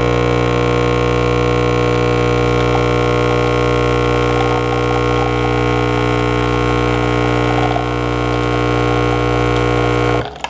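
Espresso machine's pump giving a loud, steady buzzing hum while coffee pours into a glass cup, with a faint spattering of the liquid in the middle of it.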